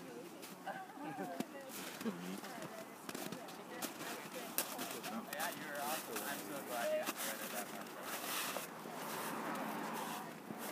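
Indistinct talk from a few people, words not made out, with scattered short clicks and rustles throughout.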